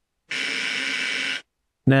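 Electromechanical relay wired as a NOT gate with its output fed back to its own input, buzzing steadily for about a second. The feedback loop makes it oscillate, its contacts rapidly opening and closing.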